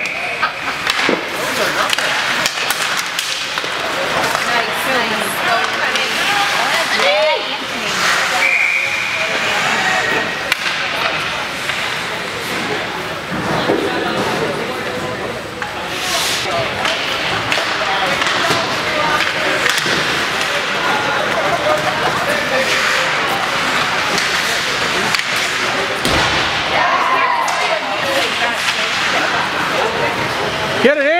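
Ice hockey game heard from the stands: sticks and puck clacking and knocking against the boards, skates scraping, and spectators talking over the top. A short, high referee's whistle sounds about eight seconds in.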